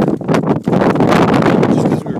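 Heavy wind buffeting the microphone on a moving snowmobile, with the sled's running noise underneath. The level dips briefly about half a second in.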